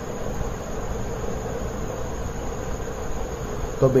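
Steady low buzzing hum over a background hiss, unchanging throughout.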